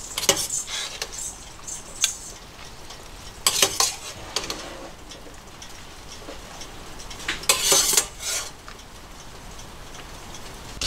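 Wire-mesh strainer scooping boiled sugar snap peas out of a pot of hot water into a stainless steel bowl: metal clinking and scraping against metal, with splashes of draining water, in several short bursts. The longest burst comes about three-quarters of the way through.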